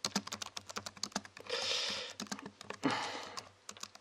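Rapid, irregular light clicks, with two short hissing noises about one and a half and three seconds in.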